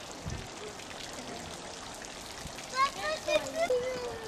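Water running steadily in a stone fountain, with a young child's voice calling out wordlessly in the last second or so.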